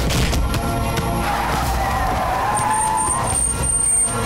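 Car tyres squealing in a skid, a wavering whine starting about a second in and dying away near the end, over dramatic background music.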